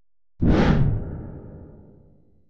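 Whoosh sound effect with a deep boom, as used for a logo reveal. It hits suddenly about half a second in, its hiss fading quickly while the low boom dies away over the next second and a half.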